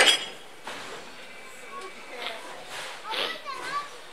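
A single sharp metallic clank with a brief ring at the start, from the steam locomotive and turntable metalwork, followed by the voices of onlookers and children calling.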